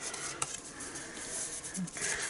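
Faint rustling and sliding of a folded cardstock card being turned over and handled on a craft mat, with one sharp tap about half a second in.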